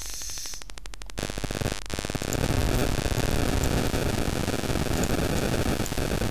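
Steady static hiss and mains hum, probably from the recording microphone, becoming louder and denser about two seconds in.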